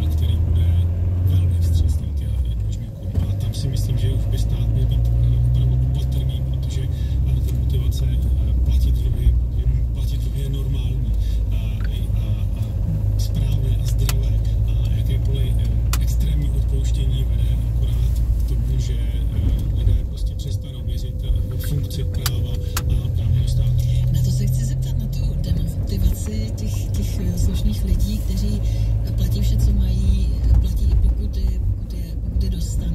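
A car driving slowly, its engine and tyre rumble heard from inside the cabin as a steady low drone, with the car radio's voice and music faintly underneath.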